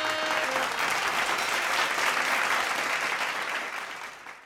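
Audience applauding after a devotional song, with the harmonium's last held notes dying away in the first half second. The applause tapers off near the end.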